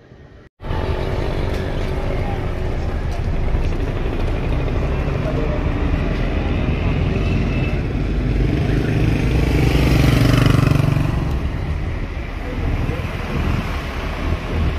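Busy street traffic: motorcycles and other vehicles running, with a steady din that starts abruptly about half a second in. An engine rumble grows loudest around ten seconds in.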